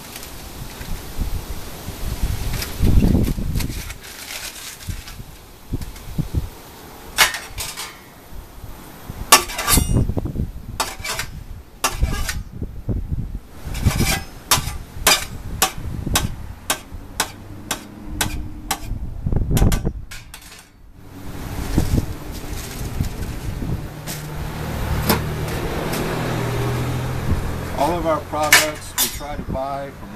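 Aluminium foil crinkling as a roasted zucchini is unwrapped, then a run of sharp clicks of a knife striking a stainless-steel pan as the squash is cut. A low steady hum comes in near the end.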